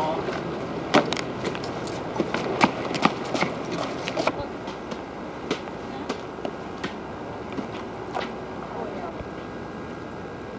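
A string of sharp, irregular taps and clicks over a steady background hiss. The taps come thickest in the first few seconds and then thin out.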